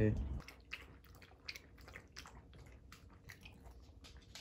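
A small dog lapping water from a stainless steel bowl: a run of quick, faint wet laps, about three or four a second.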